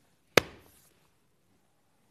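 A single sharp knock about a third of a second in, fading quickly: a hand coming down on a paper instruction sheet on a tabletop.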